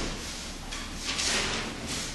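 Loose sheets of paper rustling as they are handled, with the longest, loudest rustle about a second in.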